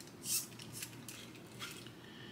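Faint handling noise from a micro RC crawler chassis being turned in the hands: a short hiss about a third of a second in, then a few soft, quieter ticks and rubs.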